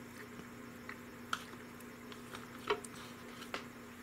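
Plastic debubbler tool working mushroom pieces down in a glass canning jar through a plastic funnel: a handful of faint, irregular clicks and taps against the funnel and jar, over a faint steady hum.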